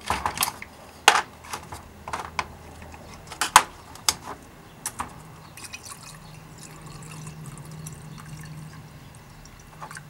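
Degreaser poured from a plastic jug into a small glass jar already part-filled with white spirits, a steady pour from about halfway through. It is preceded by a few sharp clicks and knocks.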